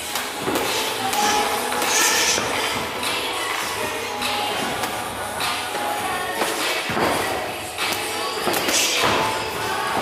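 Punches from padded boxing gloves landing on gloves and headgear during kickboxing sparring: a string of irregular blows. Music plays underneath.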